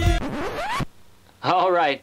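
A jingle cuts off and is followed by a quick, scratchy sweep that rises in pitch for about half a second, like a zip or a scratch effect. A short voiced sound follows about a second and a half in.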